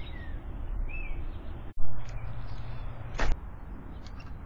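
A few short bird chirps over steady outdoor background noise. About halfway through a sudden loud noise starts and fades, with a low steady hum under it, and a short sharp sound comes near the end.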